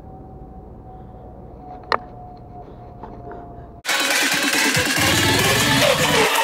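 Low, steady rolling noise with a faint steady whine and one sharp click. About four seconds in, it cuts off abruptly and loud electronic trap music with a heavy beat takes over.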